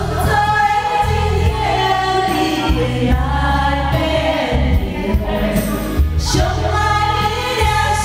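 Two women singing a Taiwanese Hokkien duet into microphones over a karaoke backing track with a strong bass line.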